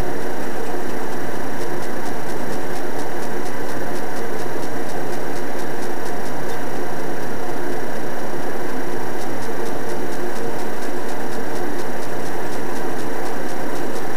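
Loud steady noise with a constant hum and faint regular ticking, no clear event.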